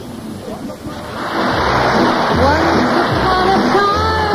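Live concert recording heard over AM radio: audience applause swells up about a second in, and the orchestra's opening bass notes and melody come in under it.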